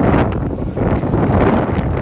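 Wind buffeting the microphone, a loud, rough, steady rumble.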